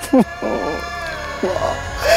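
A man sobbing, with a short falling wail just after the start and a fainter cry near the end, over sustained background music.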